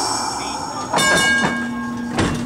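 Metallic ringing from streetcar No. 665, a 1911 Huntington Standard, as it nears a crossing. One ring is dying away when a fresh, sharply struck ring sounds about a second in, and a low steady hum comes in just after it.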